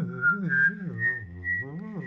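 One person whistling a melody while voicing a low bass line at the same time. The whistled notes step upward, and the low voice swoops up and down about twice a second.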